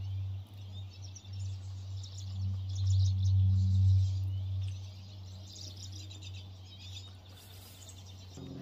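A small bird chirping, short high calls in quick clusters, over a steady low hum that swells to its loudest about three to four seconds in.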